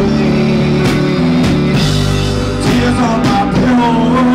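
Live rock band playing: distorted electric guitar, electric bass and a drum kit with cymbal hits, with a guitar note sliding in pitch near the end.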